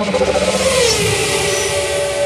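Transition sound effect with music: a loud rushing whoosh, with a tone that falls in pitch about halfway through, over held musical tones.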